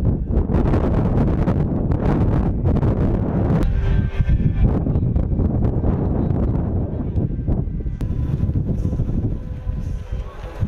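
Wind blowing across the microphone outdoors: a loud low rumble with frequent crackles.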